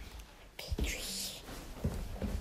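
Handling noise from a phone being carried: a few soft low knocks, and a short breathy hiss like a whisper about a second in.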